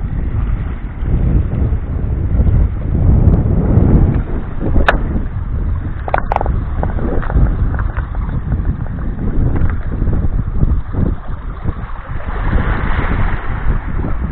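Wind buffeting the microphone in a heavy, uneven low rumble, with a few sharp clicks of pebbles knocking together underfoot about five and six seconds in.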